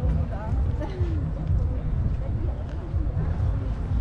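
Outdoor ambience of a pedestrian square: faint voices of passers-by over a strong, uneven low rumble of wind on the microphone.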